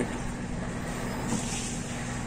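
Steady low background hum with a faint constant tone and no distinct events.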